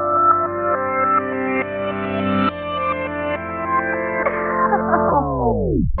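Instrumental rap type beat at 138 BPM: a melodic loop of held notes with echo. About four seconds in, the whole beat slows in a tape-stop effect, every pitch sliding down to nothing just before the end.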